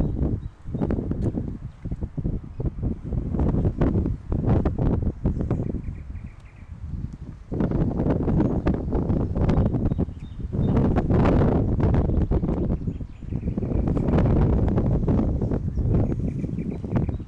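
Wind buffeting a handheld phone's microphone, a loud low rumble that swells and drops in gusts, with footsteps on pavement.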